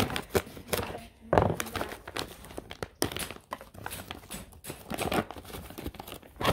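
The thick plastic bag of an MRE field ration being torn open and crinkled by hand: irregular crackling and tearing, loudest about a second and a half in.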